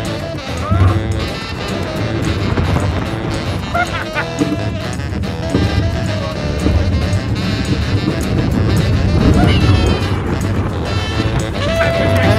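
Music playing over the low, steady rumble of a steel roller coaster train running along its track. Now and then short rising and falling voices can be heard.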